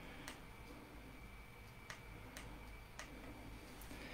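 A few faint, scattered clicks, about five, from a metal scalpel handle and hemostat being handled, over a faint steady hum.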